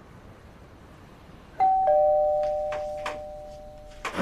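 Two-tone doorbell chime, ding-dong: a higher note about one and a half seconds in, then a lower note a moment later, both ringing on and fading slowly.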